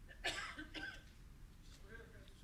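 A faint cough from someone in the room: two short bursts within the first second, then quiet room sound.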